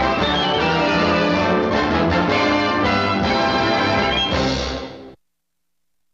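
Orchestral cartoon closing theme playing over the end card, ending on a final flourish and cutting off about five seconds in.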